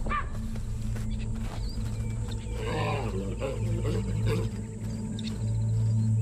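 Chacma baboons giving alarm barks at a spotted predator: one short call at the very start, then a cluster of calls about halfway through.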